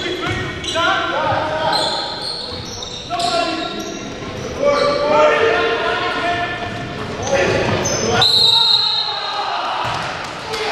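Basketball being dribbled and sneakers squeaking on a hardwood gym floor during play, with players calling out, all echoing in a large gym.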